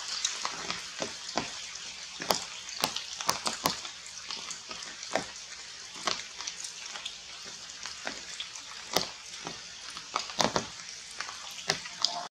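Steady rain falling on forest leaves, a continuous hiss with irregular sharp drips and drop strikes close by.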